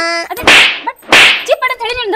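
Two loud, sharp slap-like smacks about two-thirds of a second apart, each with a short noisy tail, between snatches of voice.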